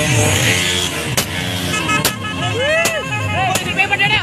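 Motorcycle engines running in a street crowd, with music playing and a few sharp cracks.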